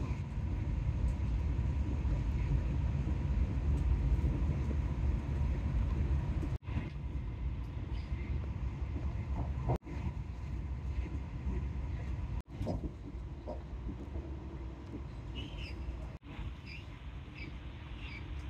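Cabin noise of an SNCF Intercités passenger train running at high speed: a steady low rumble from the wheels and track, with a faint steady whine. The sound drops out sharply for an instant four times.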